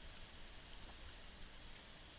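Near silence: a faint, steady hiss of room tone with no distinct sounds.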